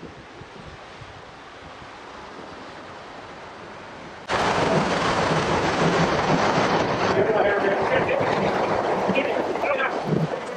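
Swift current rushing and splashing against a jon boat's hull as it is pushed upstream through a concrete culvert. The steady rush of water suddenly becomes much louder about four seconds in.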